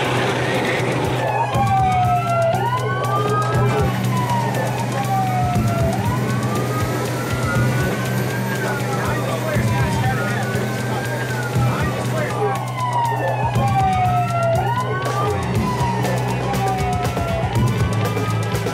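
Several police sirens wailing together, their pitch sweeping up and down over and over and overlapping, over the steady drone of a vehicle engine, heard from inside a moving police vehicle.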